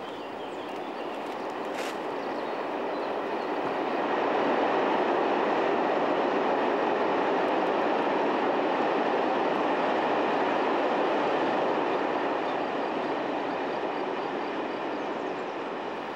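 A freight train rolling past, a steady noise of wagons running on the rails that swells over the first few seconds, holds, and eases slightly toward the end.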